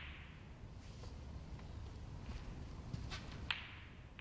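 Broadcast transition whoosh effects for an on-screen graphic wipe: one swish at the start that fades over about a second, and a sharper one about three and a half seconds in, over a low background rumble.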